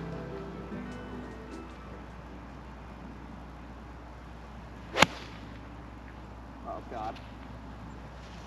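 Background music fades out over the first two seconds. About five seconds in comes a single sharp, loud crack of a nine iron striking a golf ball.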